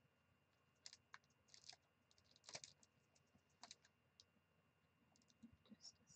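Faint, short scratchy strokes of a colored pencil on Bristol vellum paper, coming in irregular clusters as the pencil is worked back and forth in shading.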